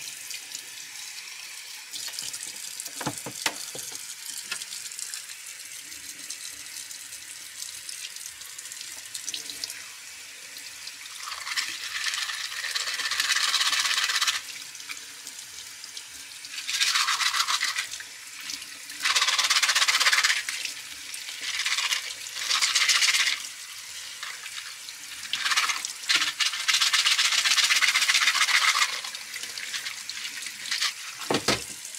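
Tap water running into a sink while a dirty aquarium filter sponge is rinsed under it, with several louder surges of splashing in the second half as the water hits the sponge and hands.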